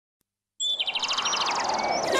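Bird chirping that starts suddenly about half a second in: a fast trill of high, quickly repeated chirps with a few short whistled glides, over a steady rushing background.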